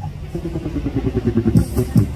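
Recorded backing music starting over the stage speakers with a fast, even, low pulsing beat. Crisp high ticks join the beat about three-quarters of the way through.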